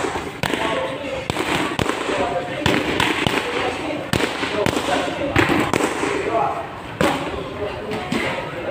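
Boxing gloves smacking into focus mitts in a string of sharp, irregularly spaced punches during pad work, over the clamour of a busy gym.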